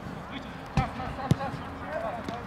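A football kicked twice on artificial turf: two sharp thuds about half a second apart, the second and louder one a shot at goal.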